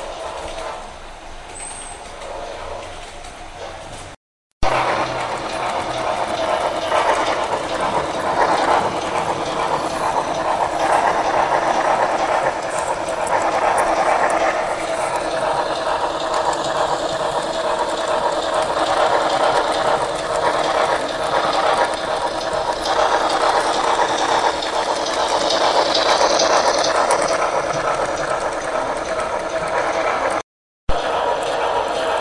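HO scale model trains running on the layout: the locomotive's motor and gears whir, and the wheels roll with fine, rapid clicking on the track. About four seconds in there is a brief break, after which it is louder, as the Daylight steam locomotive model passes close by.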